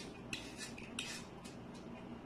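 A run of short, crisp cutting or scraping strokes, about three a second, from salad vegetables being prepared at a kitchen counter.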